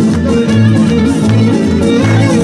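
Live folk-band music: electric bass and plucked guitar or lute strings keep a steady, pulsing rhythm under a bowed string melody.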